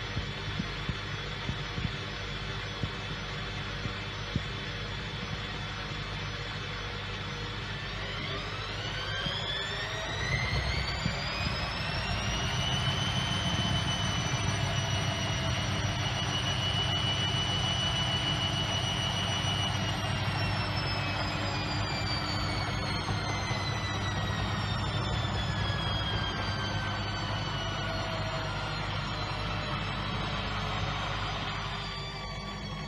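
Front-loading washing machine running with water in the drum. About a quarter of the way in, its motor whine rises in pitch as the drum speeds up, holds steady for several seconds, then falls slowly as it slows down, over a steady low hum.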